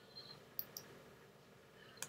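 Near silence: room tone with a couple of faint, short clicks about half a second in.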